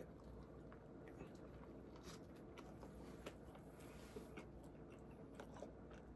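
Faint sounds of a man biting into and chewing a mouthful of a Whopper burger, with soft scattered mouth clicks over low room hum.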